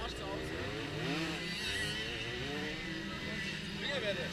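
Indistinct distant voices over a low, steady engine hum.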